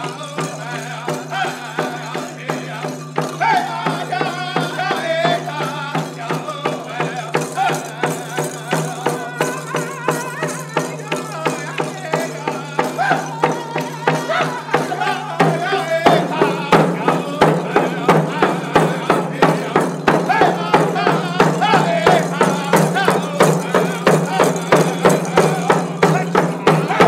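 Blackfoot chicken dance song: men singing together while beating hand drums in a steady pulse of about two beats a second. About 16 seconds in, the drumming and singing grow louder.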